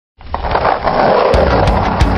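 Skateboard wheels rolling on pavement, a steady rough noise. A rock music track with drums and bass comes in past halfway.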